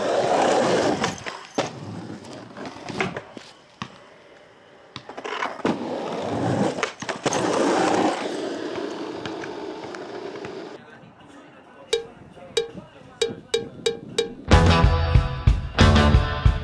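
Skateboard urethane wheels rolling over a concrete skatepark bank, broken by several sharp clacks of the board hitting the ground. From about twelve seconds in, a run of evenly spaced plucked notes begins. A loud rock song with bass and drums then kicks in near the end.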